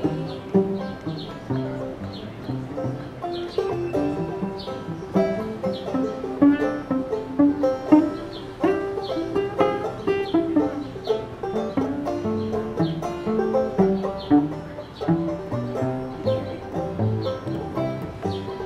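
Instrumental break on banjo and cello: banjo picking over cello notes in the low range, with no singing.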